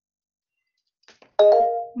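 A short electronic chime: a few steady tones that start sharply about one and a half seconds in and fade out within half a second, after a faint click or two. The first second is silent.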